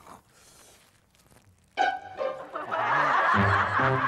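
A near-silent pause, then about two seconds in a short comic music cue starts abruptly and a sitcom audience laughs loudly over it.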